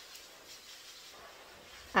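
Faint steady hiss of room tone, with a faint click just after the start and another about half a second in.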